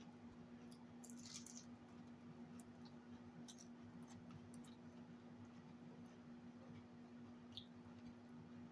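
Near silence: a steady low hum with a few faint clicks from eating, a fork working at a plate and chewing.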